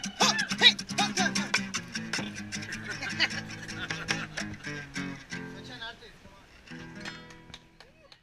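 Acoustic guitar strummed in a quick rhythm, with a voice singing out over the first second; the playing grows quieter and fades out near the end.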